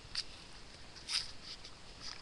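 Handling noise from a balloon being worked around a cut-off piece of plastic bottle: two short, scratchy rustles about a second apart, the second louder, over faint background noise.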